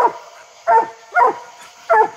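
Coonhound barking treed, reared up against the trunk: four short, loud barks in quick succession.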